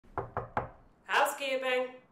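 Three quick knocks on a hotel room door, then a woman's voice calling out one long, drawn-out word, a housekeeper announcing herself.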